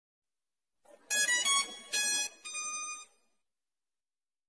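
Short electronic intro jingle: four bright synth notes starting about a second in, the last one softer and longer, ending about three seconds in.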